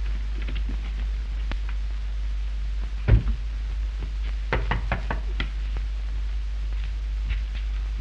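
A door shuts with a heavy thud about three seconds in, then a quick run of knocks on a wooden door a second or so later. A steady low hum and hiss from the old film soundtrack runs underneath.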